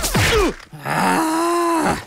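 Cartoon bounce-and-crash sound effects with falling pitch glides, then about a second in a cartoon character's long groan: one held note that sags at the end.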